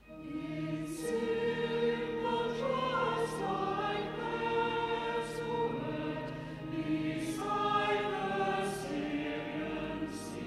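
A choir singing, starting right after a brief quiet: held chords that move slowly, with the sung words' 's' sounds coming through every second or two.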